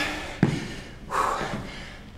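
A single sharp thump about half a second in as a sneakered foot plants on the floor during a barbell lunge, then a heavy breath out from the exerting lifter about a second in.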